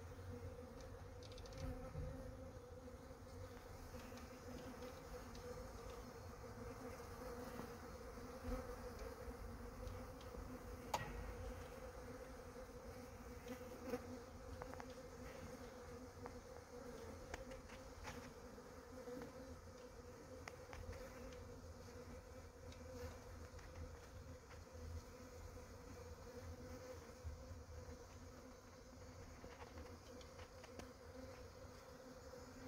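A newly settled honeybee swarm, clustered on a branch, buzzing in a steady, faint hum, with a low rumble underneath.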